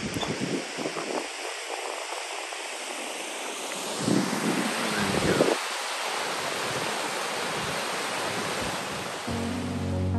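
Steady rushing hiss of a cascading mountain waterfall, with low rumbling gusts of wind on the microphone about four to five and a half seconds in. Music with steady held notes comes in near the end.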